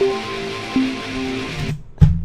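Rhythm guitar loop playing back through the music software: held guitar notes that change pitch about three-quarters of a second in, then stop shortly before the end.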